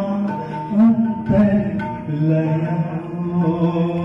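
Male voice singing a Nepali ghazal in long, held, gently bending lines, with tabla, violin and guitar accompaniment.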